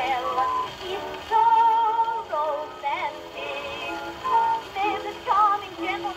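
A woman singing with vibrato from an early Oxford Records disc played on an acoustic gramophone, heard through its soundbox and horn. The sound is thin and nasal with almost no bass. There is one long held note about a third of the way in.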